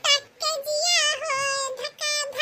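Singing in a high-pitched cartoon voice: a single vocal line that glides and wavers in pitch, broken by short pauses.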